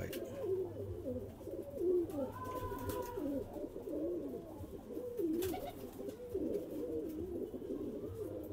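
Several domestic pigeons cooing continuously, their low, wavering calls overlapping one another.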